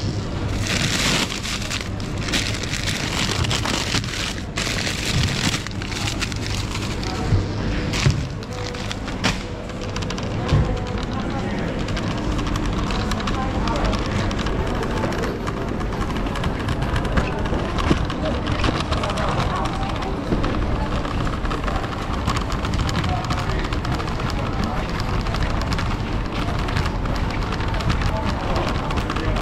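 Supermarket ambience: indistinct chatter of shoppers over the steady rattle of a shopping trolley being pushed along the aisles, with a few sharper knocks between about eight and eleven seconds in.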